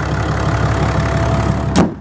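Ram 2500's 6.7 L Cummins inline-six turbo diesel idling steadily with the hood open, then the hood slammed shut with one loud bang near the end, after which the idle sounds duller.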